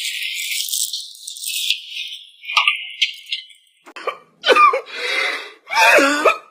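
Wheels of a hard-shell suitcase rattling over a tiled floor for about three and a half seconds. From about four seconds in, a man's crying sobs follow: several short, loud wails.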